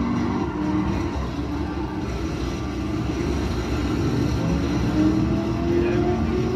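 Arcade racing video game playing through its cabinet speakers: music with the game's car engine noise.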